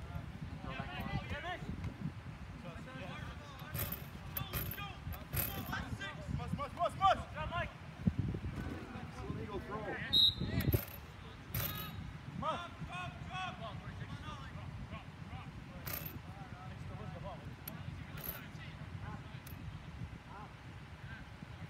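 Indistinct shouts and chatter from players and spectators at an outdoor soccer game, with a few sharp clicks or knocks scattered through it and a steady low rumble underneath.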